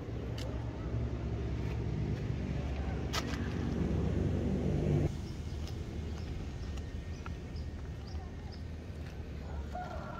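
Mercedes-Benz E250 CGI's 2.0-litre turbocharged four-cylinder idling with a steady low rumble. A fuller, louder drone cuts off suddenly about five seconds in, leaving the lower idle hum.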